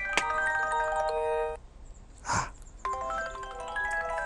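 Phone ringtone playing a chiming, marimba-like melody of quick stepped notes. The phrase breaks off for about a second in the middle, where there is one short rush of noise, then starts again.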